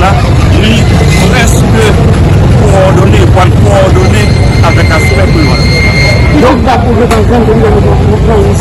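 A man speaking over a constant loud low rumble of street traffic.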